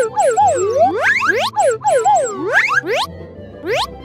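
Cartoon sound effects over children's background music: wobbling, up-and-down warbling tones, then a string of quick rising whistle-like sweeps, the last one near the end.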